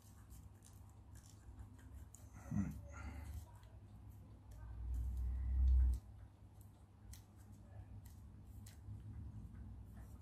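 Faint clicks and light scrapes of a plastic drinking straw being pressed flat with a craft knife on a table. A short murmur comes near three seconds in, and a low rumble of handling noise rises about five seconds in and cuts off suddenly near six seconds.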